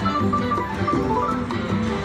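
WMS Gold Fish video slot machine playing its electronic win tune, a quick run of short melodic notes, as the bonus credits are awarded and counted up into the credit meter.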